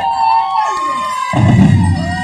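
Military marching drum band: a held high note carries on while the drums fall silent, then the drums come back in strongly about a second and a half in.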